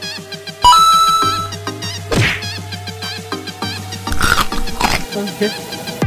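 An added sound-effect track: insect-like buzzing with steady electronic tones, and a few short swishes at about two-second intervals.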